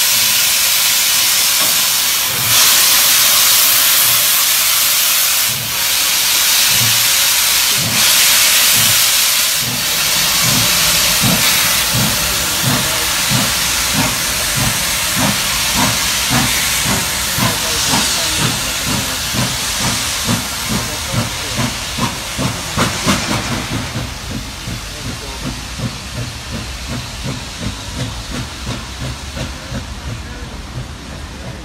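NSWGR 36 class 4-6-0 steam locomotive 3642 pulling away: a loud hiss of steam from its cylinder drain cocks, then chuffing exhaust beats that quicken to two or three a second and fade as it draws off.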